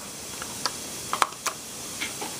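A few light clicks and taps from a hand handling a small plastic radio repeater box and its cables on a stone countertop, over a steady hiss.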